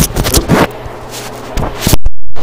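Handling noise from a handheld camera being turned and repositioned: a few loud scraping, rubbing bumps against the microphone, with a quieter stretch between them.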